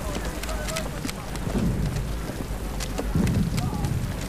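Men's voices and laughter among soldiers crowded together, over a steady hiss of rain, with scattered sharp clicks and knocks of kit.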